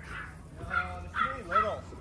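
Small dogs yipping and whining: a few short, faint calls in the second half.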